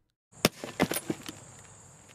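A 40-pound dumbbell dropped onto a glass bottle lands with one sharp thud about half a second in. It punches the bottle through half-inch flake board without breaking it, then gives a few lighter knocks as it settles. A faint steady high whine runs underneath.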